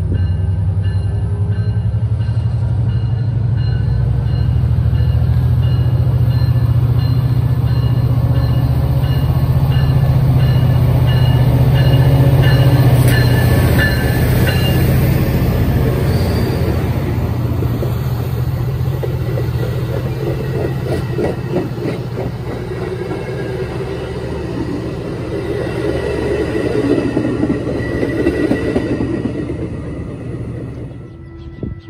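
Metra commuter train passing through: the diesel locomotive's engine drone builds, is loudest about halfway through as it goes by, then eases off. The bilevel stainless-steel passenger cars follow, rattling and clacking over the rails, and the sound fades off at the very end.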